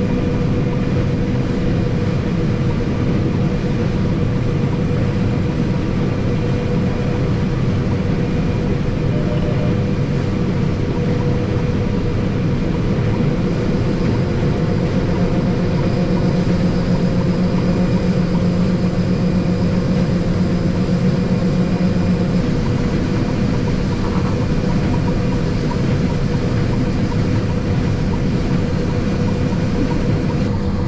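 John Deere combine harvester running steadily while cutting soybeans, heard from inside the cab as a constant low drone. A deeper hum joins about halfway through and stops about three-quarters of the way in.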